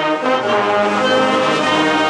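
Pep band of flutes, clarinets, saxophones, trumpets, mellophones and sousaphones playing loud, brass-heavy held chords that change every half second or so.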